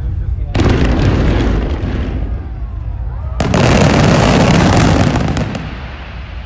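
Fireworks display: a volley of comets fired in a row goes off with a sudden noisy rush about half a second in and fades over a couple of seconds. A second, louder volley starts about three and a half seconds in, with a few sharp pops near its end.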